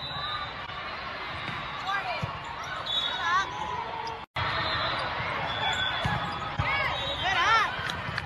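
Indoor volleyball game sounds: the ball being hit and bouncing on the court, short high shoe squeaks on the gym floor, and voices of players and spectators. The sound cuts out briefly a little after four seconds in, as one clip ends and the next begins.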